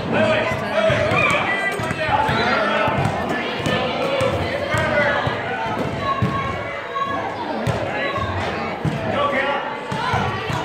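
Indistinct voices of spectators and players echoing in a gymnasium, with a basketball bouncing on the court floor and scattered thuds.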